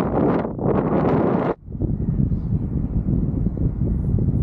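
Wind buffeting the microphone, a steady low rumble. It follows a brighter rushing noise that cuts off abruptly about a second and a half in.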